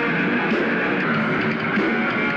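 Live rock band playing on stage, with electric guitars to the fore over the drums.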